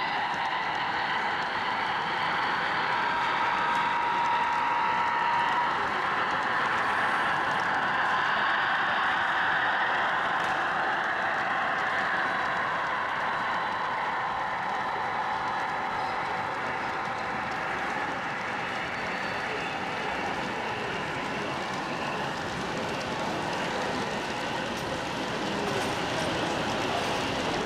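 A model freight train rolling steadily along the layout's track, its wheels running on the rails, over the constant murmur of a crowd in an exhibition hall.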